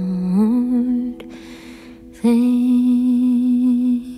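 A woman humming wordless held notes in a folk-pop song: a low note that slides up about half a second in, a short break about a second in, then a long steady higher note. A soft sustained accompaniment runs underneath.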